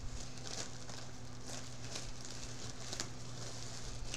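Plastic packaging crinkling and rustling in irregular bursts as a garment in a clear plastic bag is handled and pulled out, over a steady low hum.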